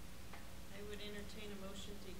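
Faint voices of board members answering a voice vote, starting just under a second in, over a low steady room hum.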